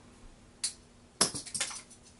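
A small plastic toy car is flung from its spring launcher: a faint click, then a sharp clack as it hits a hard surface, followed by a few quick rattling bounces.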